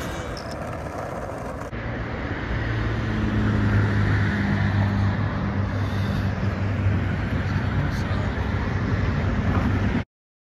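Road traffic noise: a steady low engine hum over a wash of road noise. The hum gets stronger a couple of seconds in.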